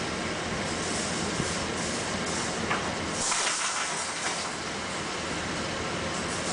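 A steady rushing noise, with a few faint clinks from wire-mesh crate panels being handled.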